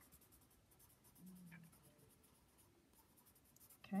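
Red colored pencil scratching back and forth on paper, shading in a small circled letter with quick, faint, repeated strokes.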